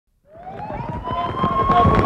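An emergency-vehicle siren winding up: it starts low a moment in, rises in pitch over about a second, then holds a steady high wail, with scattered knocks and clatter underneath.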